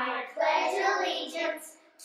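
Children's voices reciting the opening words of the Pledge of Allegiance, 'I pledge allegiance to the flag,' with a short pause near the end.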